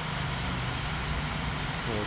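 A steady low mechanical hum, like a running motor or engine, under even background noise.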